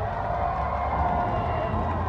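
Low, steady rumble of monster truck engines idling at the starting line, under a faint crowd murmur in a large arena.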